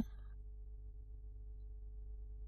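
Faint, steady hum made of a few held tones over a low rumble.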